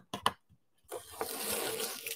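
A few light clicks, then from about a second in a steady ripping hiss of green painter's tape being peeled off watercolour paper.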